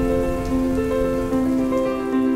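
Steady rain, laid under slow keyboard music whose long held notes change every half second or so.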